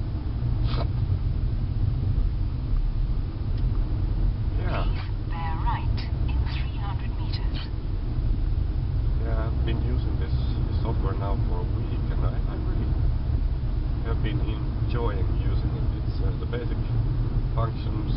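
Steady low rumble of a car driving in city traffic, heard from inside the cabin, with short stretches of quiet, indistinct speech over it.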